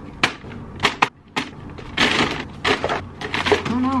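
White paper takeout bag crumpled and rustled by hand: a series of sharp crinkles with a longer rustle about halfway through.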